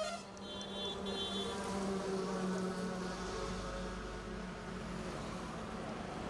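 Street traffic: a vehicle engine buzzes steadily, with two short high horn beeps in the first second. A low rumble comes in about three seconds in.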